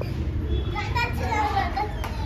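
Young children's voices, calling out and chattering in high pitch as they play, over a steady low rumble.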